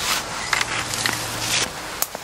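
Spade digging in root-filled soil: the blade scraping and crunching through earth and roots, with a few short sharp scrapes.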